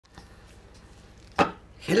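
A single sharp tap on a hard surface about one and a half seconds in, over a faint steady low hum.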